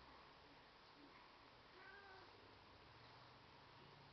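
A domestic cat's single faint meow about two seconds in, over quiet room tone.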